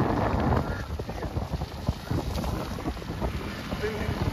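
Wind buffeting the microphone: an irregular low rumble, louder in the first half second.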